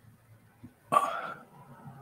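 A man's brief throat sound, about half a second long, about a second in.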